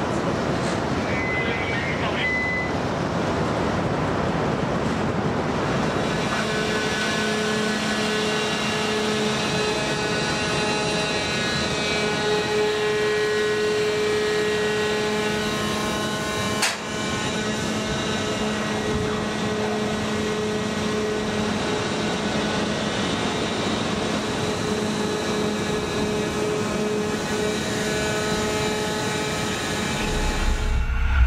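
Launch-and-recovery machinery of the NATO Submarine Rescue System running with a steady hum that sets in about six seconds in, as the crane lowers the rescue vehicle into the sea. It sits over a constant wash of wind and sea noise. A short beep comes about a second in.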